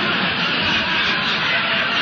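Studio audience laughing loudly and at length, heard on an old radio broadcast recording with its top end cut off.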